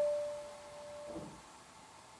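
A single grand piano note ringing and dying away, cut off about a second in, followed by a short pause in the playing with only quiet room tone.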